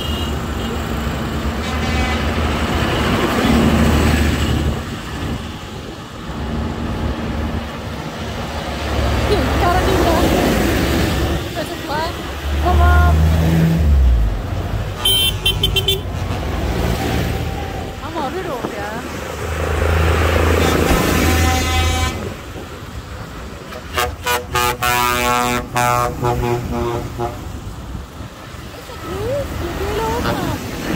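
Farm tractors' diesel engines running as they drive slowly past, growing louder as each one passes. A horn sounds about halfway, and a run of short horn blasts follows a few seconds before the end.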